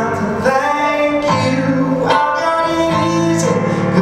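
A live song: a man singing to his own keyboard accompaniment, with sustained chords changing about once a second.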